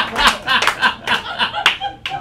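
Audience applauding and laughing, the clapping and laughter thinning out toward the end.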